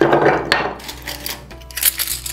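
Craft materials being handled on a tabletop: a brief rustle at the start, then light clicks and knocks as small hard pieces are picked up and set down.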